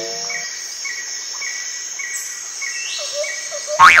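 Cricket chirping in the animation's soundtrack: a steady high buzz with short chirps repeating about every half second, while the tail of a ringing strike fades out in the first half second. Near the end comes a sudden loud hit with falling pitches as the cartoon coconut lands, and a voice exclaims.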